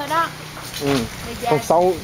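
Speech only: people's voices saying a few short phrases.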